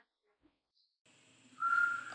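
Almost silent for about a second, then a short, high whistle-like tone near the end that rises slightly in pitch and lasts about half a second.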